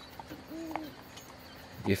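A single short, low bird hoot about half a second in, over a faint steady hiss of background ambience.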